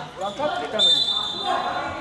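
Referee's whistle blown once: a single steady shrill blast just under a second long, starting about a second in.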